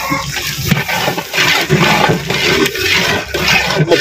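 A large pot of mutton gravy for biryani boiling hard: steady, churning bubbling with no clear pauses.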